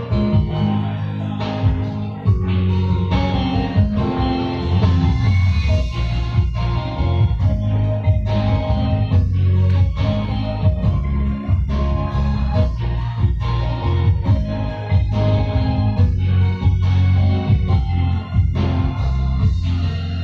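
Instrumental break of a Chinese pop karaoke backing track: a steady drum beat over bass and sustained keyboard and guitar notes, with no singing.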